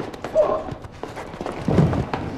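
A scuffle between two men: scattered knocks and thumps, a short strained cry about half a second in, and a louder grunt with a heavy thud near the end.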